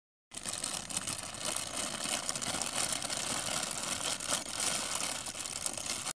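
Thin plastic bag crinkling and rustling continuously as hands work it open and tip raw meatballs out onto a plate; it starts just after the beginning and cuts off abruptly at the end.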